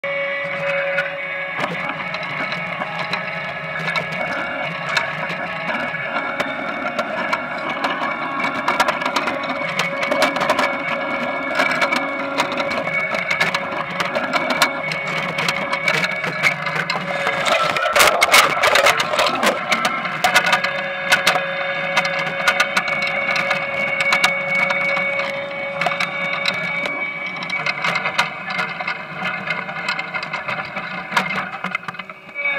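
Potato harvester running, a steady mechanical drone and whine with frequent small clicks and knocks of potatoes tumbling on the rod conveyor. A louder stretch of rattling comes a little past halfway.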